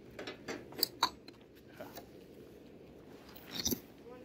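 Short crinkly clicks and rustles of food packaging being handled, a flurry in the first second and a louder crackle near the end: foam takeout containers and plastic bags picked up from a serving table.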